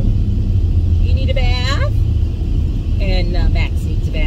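Steady low road and engine rumble inside a moving vehicle's cab.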